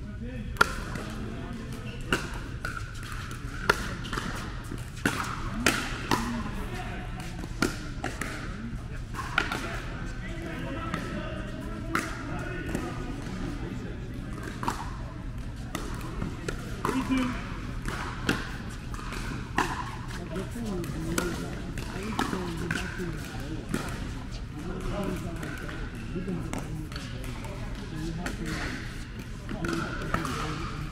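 Pickleball paddles striking a hard plastic pickleball in rallies: a run of sharp pops roughly a second apart, the loudest one near the start, over a murmur of voices.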